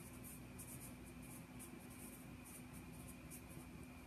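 Faint, irregular scratching of a pen writing on paper, over a low steady electrical hum.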